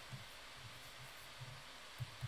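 Faint steady hiss of room tone with a few soft low rumbles, no distinct event.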